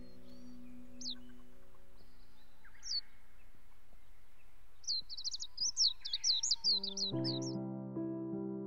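Small bird chirping: two single high, falling chirps, then a quick run of about a dozen chirps about five seconds in, over a faint steady outdoor hiss. Piano music fades out at the start and a new piano phrase comes in near the end.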